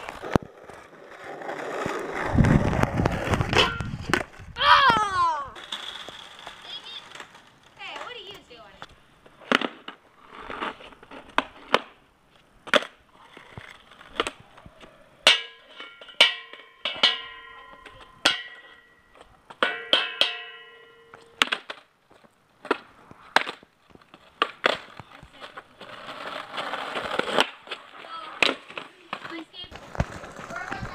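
Skateboards rolling on street asphalt, with a rumble early on and many sharp clacks and knocks from boards popping, landing and hitting the ground. In the middle come a series of sharp strikes, each followed by a ringing tone.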